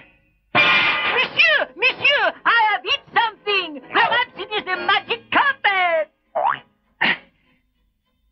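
Cartoon soundtrack of quick, bouncy sliding tones, boing-like, one after another, thinning to two short ones in the last couple of seconds.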